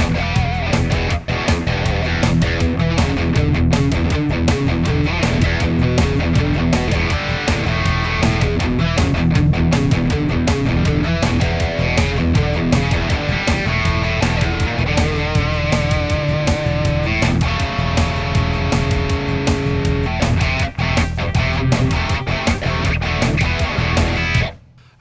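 Electric guitar, a Fender Stratocaster, played through the NUX Trident's overdrive patch: continuous driven chords and note runs throughout.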